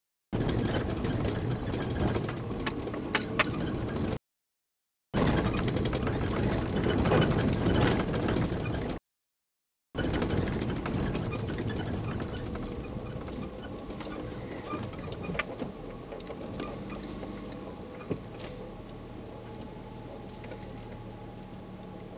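Truck driving on a rough dirt road, heard from inside the cab: engine and road noise with scattered rattles and ticks. The sound cuts out to silence for about a second twice, then grows gradually quieter with a steady engine hum as the truck slows.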